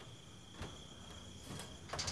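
Crickets chirring steadily in a single high pitch, with a few short soft knocks or clicks about half a second in and again near the end.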